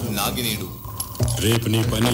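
Soundtrack of a film clip playing over the hall's speakers: a man's voice speaking, a deep voice coming in about a second in, with a jangling, clinking sound behind it.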